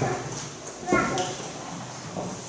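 Speech: a person talking in a reverberant room, with a short burst of speech about a second in.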